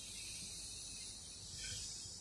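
Faint, steady hiss of a roomful of people drawing a long, deep breath in together during a guided breathing exercise.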